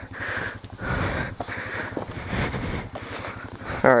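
A person breathing hard close to the microphone, several heavy breaths in a row after exertion.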